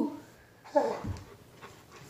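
A golden retriever gives one short vocal sound a little under a second in, followed by a brief low bump.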